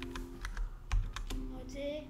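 Computer keyboard keystrokes: about five separate clicks, the loudest about a second in.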